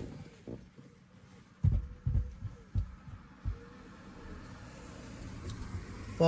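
A few soft, low thuds inside a van cab, four of them in under two seconds, followed by a faint hiss that slowly grows.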